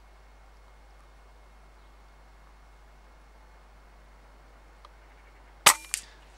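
A .22 Theoben MFR pre-charged air rifle firing once near the end, a single sharp crack followed at once by a quieter second knock. Before the shot there is only a faint steady background hiss.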